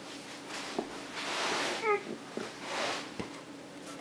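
Foil booster-pack wrapper crackling as it is torn open and handled, in two rustling stretches with a few sharp clicks, and a brief pitched squeak about halfway through.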